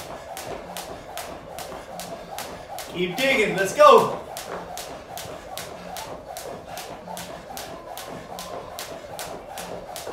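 Jump rope turning steadily, the rope slapping the rubber floor mats in an even rhythm of about two and a half strikes a second. A short vocal shout about three seconds in is the loudest sound.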